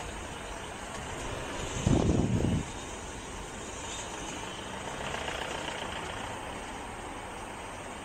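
Steam locomotive moving slowly away over the station track. There is a steady background of engine and ambient noise, and a short, loud, low rumble about two seconds in.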